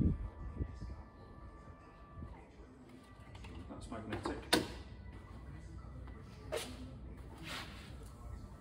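Electric wheelchair hoist's motor whining steadily as the lifting strap pays out, stopping about two seconds in, followed by a few sharp clicks and knocks of the hook and hoist being handled.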